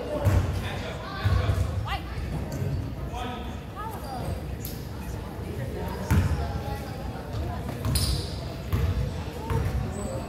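A basketball bouncing on a hardwood gym floor: a series of irregularly spaced low thumps as the free-throw shooter dribbles at the line.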